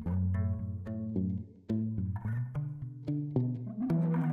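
Background music: plucked, pizzicato-style bass and string notes in a light, bouncy line.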